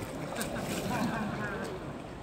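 Water splashing from a swimmer's freestyle strokes in a pool, with voices in the background.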